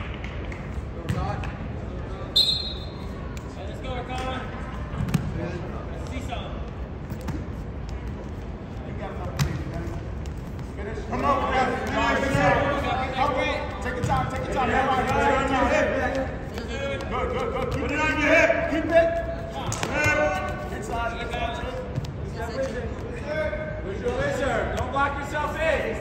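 Indistinct shouting and calling from coaches and spectators in a school gym during a wrestling bout, near-continuous from about ten seconds in. A few sharp knocks are scattered through.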